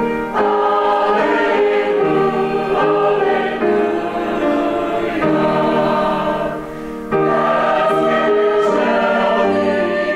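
Mixed church choir of men and women singing together in sustained phrases, with a brief lull about seven seconds in before the next phrase comes in.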